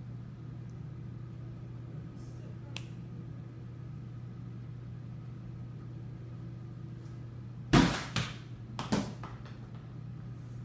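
A thrown American football landing and bouncing: two loud thumps about a second apart near the end, with smaller knocks between them. A steady low hum runs underneath.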